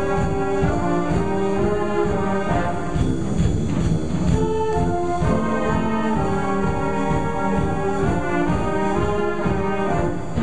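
School jazz band playing live: saxophones and brass holding chords over a steady beat.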